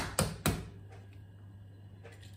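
A raw egg being knocked to crack its shell: three sharp taps in quick succession at the start, the first the loudest.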